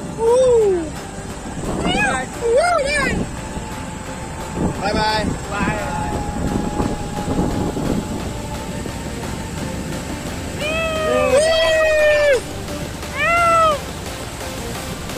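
High vocal calls that slide up and down in pitch over background music: a falling one at the start, two short ones a couple of seconds in, a long held one near the end and a last short one just after.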